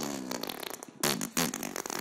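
Cartoon fart sound effects: a few short, quiet toots, the clearest about a second in and again just after.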